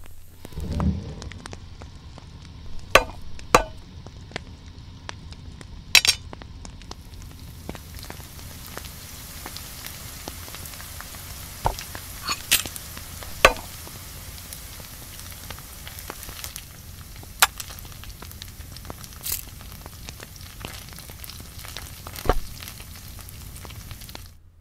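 A few sharp clicks and knocks, then from about seven seconds in a steady sizzle of food frying in a pan on a gas stove burner, with occasional sharp clicks over it.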